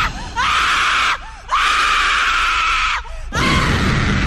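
A girl screaming in three long, rough screams with short breaks between them.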